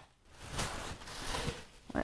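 A bag rustling as hands dig through it and handle the items inside, with a short sharp click or tap near the end.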